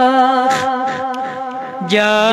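A boy's voice singing a Kashmiri naat: a long held, wavering note, a softer breathy stretch in the middle, and a new note taken up just before the end.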